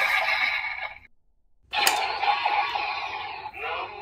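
Dread Driver transformation belt playing its electronic sound effects. One effect fades out about a second in, and after a short gap a new one starts with a sharp hit, with a warbling pitched sound near the end.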